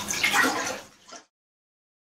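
Sugar water sloshing and swishing in a glass fish tank as it is stirred vigorously by hand. It stops abruptly a little over a second in.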